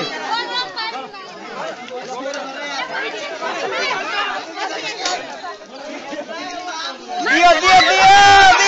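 Many overlapping voices of boys and young men chattering and calling out at once. The voices get louder and more shouted near the end.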